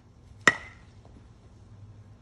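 Baseball bat striking a ball off a batting tee: one sharp crack with a brief ringing tail about half a second in.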